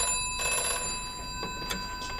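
Telephone bell ringing: a burst of ringing right at the start, then the bell's tones hang on and slowly fade.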